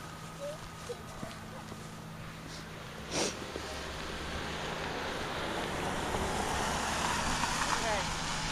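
A car passing on the street, its tyre and engine noise building steadily and loudest near the end.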